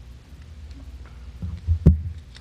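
The lectern microphone picking up handling: a few low thumps near the end, the last one a sharp knock and the loudest, over a steady low hum from the sound system.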